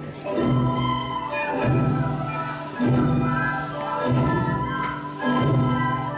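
Children's school ensemble of ukuleles, recorders and hand drums playing a piece, with held chords changing about once a second.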